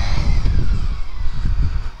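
A BMW K1600GT's inline-six engine running as the motorcycle moves off into traffic, under heavy wind rumble on the rider's microphone.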